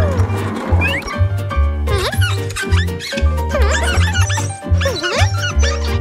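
Upbeat cartoon background music with a steady bass beat. From about two seconds in, the cartoon rat's high, swooping wordless vocal sounds come in over it, several short rising and falling calls.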